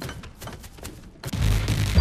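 Cartoon magic-spell sound effect: a sudden loud, low rumble starts about two-thirds of the way in, after a quieter stretch with faint clicks.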